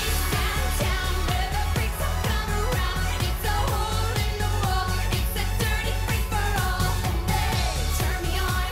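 A live pop song: a woman singing over an electronic dance beat with a heavy, steady bass. The beat and bass come in suddenly at the start.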